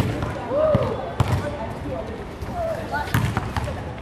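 A volleyball being struck by players' hands and forearms, a few sharp slaps spaced irregularly, with short shouted calls between the hits.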